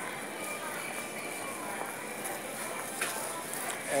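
Supermarket background: faint voices of other shoppers over a steady hum. A single click sounds about three seconds in.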